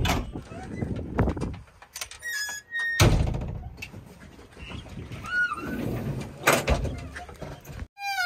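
Cab door of a JCB 3DX backhoe loader being worked and shut: a loud slam about three seconds in, with lighter knocks of the door and latch before and after.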